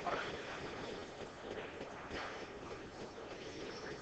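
Faint clicks of pool balls being pushed together in a triangle rack on the cloth, over low room noise.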